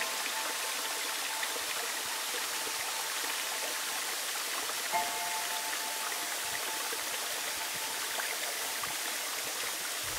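A shallow stream flowing over rocks, a steady rush of water. A soft held musical chord sounds at the start and again about halfway through, fading each time.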